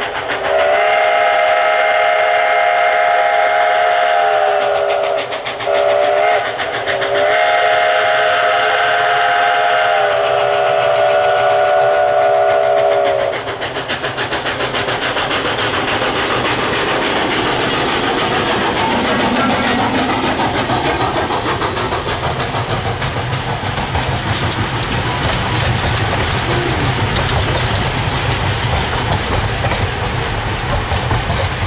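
Steam whistle of an ex-Canadian National 0-6-0 steam locomotive: a long blast, a short one and a final long blast ending about 13 seconds in, the close of a grade-crossing signal. The locomotive and its passenger cars then pass close by, with rapid rhythmic clicking of wheels over rail joints and a deepening rumble.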